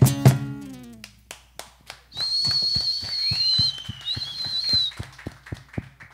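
The last acoustic-guitar strum rings out and fades over the first second. Then someone whistles shrilly, two long held notes about two and four seconds in, over a run of steady taps about three a second.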